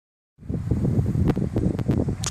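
Wind buffeting the microphone as a steady low rumble, which starts abruptly a third of a second in, with a few faint short taps in the second half.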